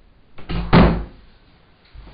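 An interior door being pushed shut, closing with one solid thud a little under a second in.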